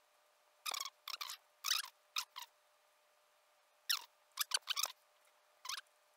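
Computer mouse clicking: about ten short clicks in two bunches, a few seconds apart, as points are set along an outline.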